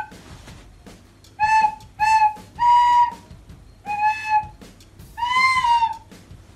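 Child playing a descant recorder: five separate notes at nearly the same pitch, with short gaps between them. The last note is held longer and its pitch rises slightly and falls back.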